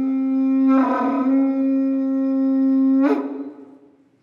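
Conch-shell trumpet with a carved wooden mouthpiece (Māori pūtātara), blown in one long, steady blast on a single note. The blast swells with extra breath about a second in, ends with a short upward flick about three seconds in, and fades out within the next second.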